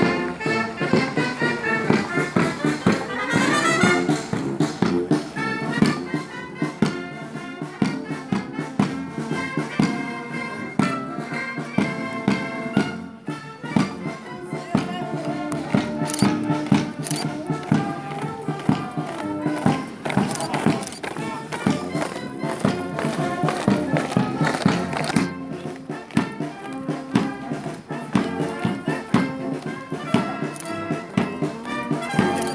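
Military brass band playing a march, with a steady beat.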